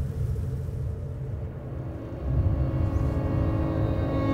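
Low rumbling drone that dips and then swells again past the halfway mark, with sustained musical tones entering near the end as the soundtrack music builds.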